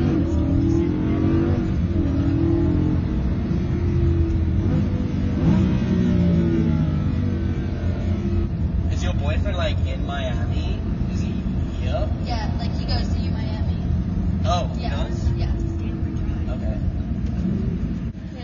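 Lamborghini engine running, heard from inside the cabin, with its pitch rising and falling as it revs during the first half; talk between the occupants over it later on.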